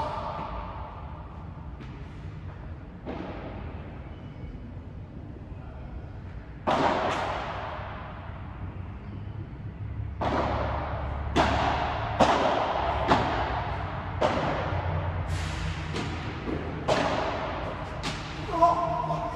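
Padel ball struck by rackets and bouncing off the court and glass walls during a rally. Each sharp hit rings on in the large, echoing dome hall. The hits are spaced out at first and come in quicker exchanges from about ten seconds in.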